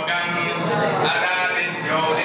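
Several voices chanting at once, overlapping in held, wavering tones with no pause.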